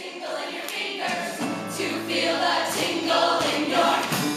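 A musical-theatre ensemble singing together in chorus with instrumental accompaniment, the music growing louder as the number gets under way.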